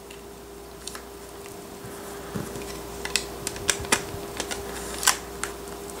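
Hard plastic clicks and taps as a BlackBerry Passport is pressed into a two-part Seidio Surface case and the halves snap together. There is a run of short, sharp clicks in the second half, the loudest one near the end.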